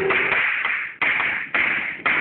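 Chalk writing on a chalkboard: three scratchy strokes, each starting sharply and fading, the second about a second in and the third half a second after it.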